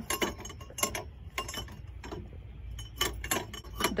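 Metal chime tubes of a playground musical panel being slapped and tapped by a toddler's hands: a dozen or so irregular short metallic clinks, some ringing briefly.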